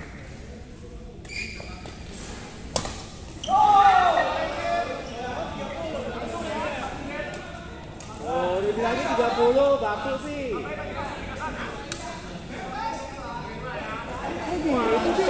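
Badminton rally in a large hall: a few sharp racket hits on the shuttlecock, several seconds apart, with the hall's echo. Players shout and talk loudly; the loudest is a shout about four seconds in, and more voices follow near the middle.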